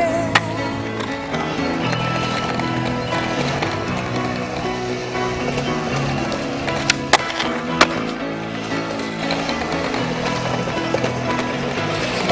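Background music throughout, with skateboard sounds over it: the board grinding a concrete ledge at the start, urethane wheels rolling on concrete, and a few sharp clacks about seven to eight seconds in from the board popping and landing.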